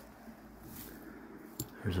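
Faint rustling of leaf litter and forest floor debris as a hand brushes over it, with a small click or two, before a man starts speaking near the end.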